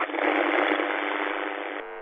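Radio static hissing steadily between transmissions, with a narrow, tinny sound. It starts with a small click and cuts off just before the end.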